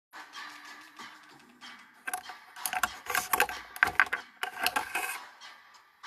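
A rapid, irregular run of clicks and clatter, like small hard objects being handled, loudest from about two to five seconds in.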